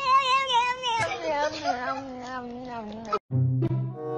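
A cat's long, wavering yowl that slides down in pitch over about three seconds and cuts off suddenly. Music starts near the end.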